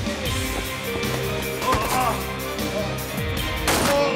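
Tense dramatic film score with fight sound effects. There are a few short hits, and one loud sharp impact comes near the end.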